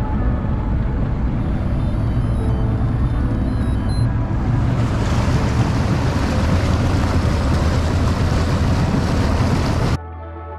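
Mariner outboard motor running at speed under way, a steady low drone, with the rush of wake water and wind. About halfway through, the hiss of water and wind grows much louder.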